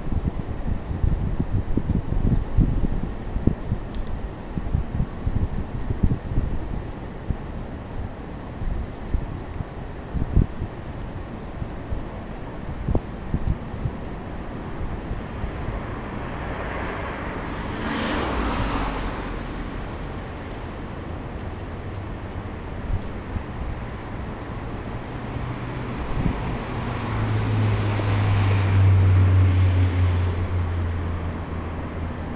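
Wind buffeting the microphone in low gusts for the first ten seconds or so. Then a vehicle passes, swelling and fading about eighteen seconds in, and another approaches near the end with a low engine hum that grows louder.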